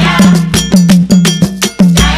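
Beninese gospel music led by percussion: a sharp, bell-like struck pattern repeating about four times a second over a steady low tone, with choir singing faint under it.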